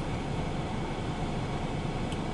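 Steady low rumble with an even hiss, heard from inside a parked car; no single event stands out.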